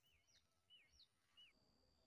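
Near silence, with a faint bird calling: a short chirp that slides down in pitch, repeated two or three times a second. A faint steady high tone comes in near the end.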